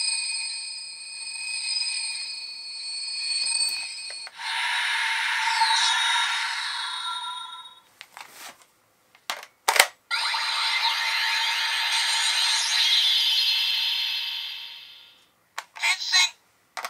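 CSM V Buckle, the Kamen Rider Ryuki transformation-belt replica, playing its transformation sound effects through its speaker. A ringing sound made of several steady pitches swells and fades three times. Two long whooshing effects follow, separated by a few sharp clicks, and more clicks come near the end.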